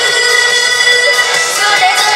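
Loud backing music played through a stage PA, with a female singer's amplified voice over it.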